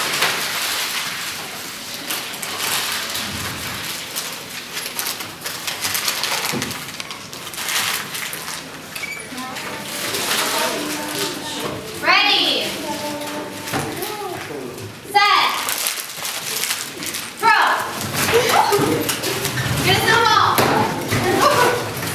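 A classroom of middle-school students talking over one another, with several short, excited calls and shouts in the second half.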